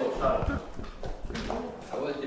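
Indistinct talking in a room, with a few sharp clicks through the middle.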